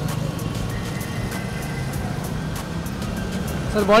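Steady city street traffic noise, a low even rumble of cars passing on the road.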